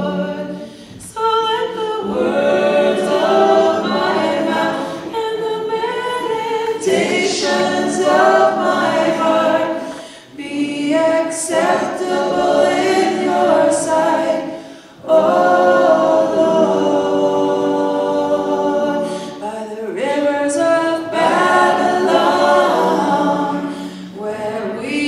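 A group of voices singing a song without instruments, in phrases of several seconds with short breaks between them.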